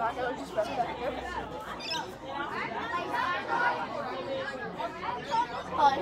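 Indistinct voices chattering, with no other clear sound.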